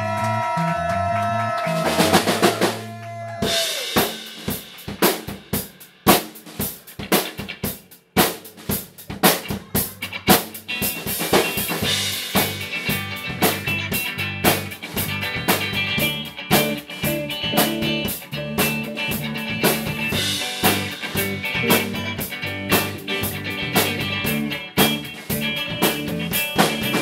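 Live rock band playing electric guitars, bass and drum kit. A held chord cuts off about three and a half seconds in, then drum hits come in sparsely and build into the full band playing a steady groove from about eight seconds on.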